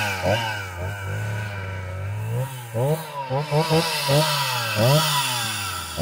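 Stihl 029 two-stroke chainsaw revving in quick throttle blips, each rev rising and falling in pitch, settling to a steadier, lower run for about a second and a half before the blipping resumes.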